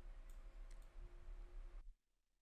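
Near silence with a few faint computer mouse clicks over a low room hum; the sound cuts out completely near the end.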